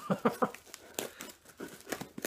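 A parcel box being opened by hand: a run of short crinkling and rustling sounds with scattered clicks.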